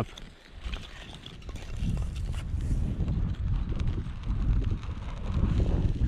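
Breath blown onto a small, struggling kindling fire, heard as a low rumbling rush of air on the microphone from about two seconds in, after a few light knocks of wood being handled.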